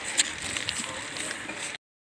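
Rustling and handling noise with a few light clicks, the sound of movement close to the microphone in the dark, cutting off suddenly to silence near the end.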